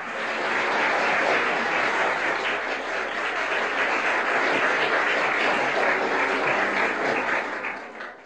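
Crowd applause: a dense, steady mass of many hands clapping that swells in over the first second, holds and fades out at the end.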